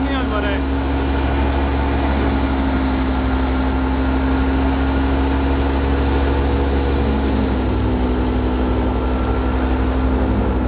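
An engine running steadily with an even, low drone, its note shifting slightly about three quarters of the way through.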